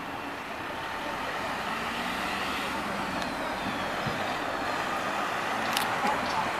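Road traffic noise: a steady rushing hiss of passing vehicles that swells over the first second or so and then holds, with a sharp click near the end.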